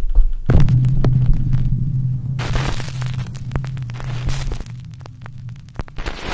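Video intro sound effect: a low droning hum peppered with crackling static clicks, with a hiss of static joining about halfway through. It fades out near the end.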